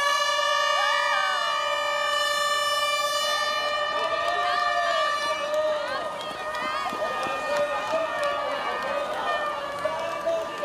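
A start horn sounds one long, steady, high note as the runners set off, over the voices of a cheering crowd.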